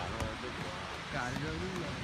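Steady hiss of surf and wind, with a soft voice speaking briefly in the second half.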